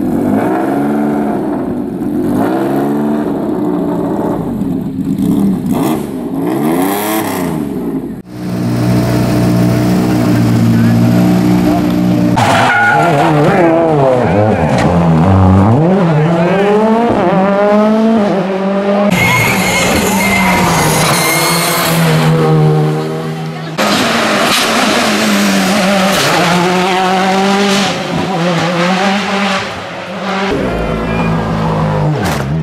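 Rally car engines at full throttle on a stage, revving hard with pitch repeatedly climbing and dropping through gear changes and braking, in several passes cut one after another.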